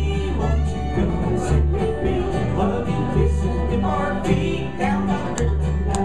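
Live bluegrass band playing: fiddle, banjo, acoustic guitar and upright bass together.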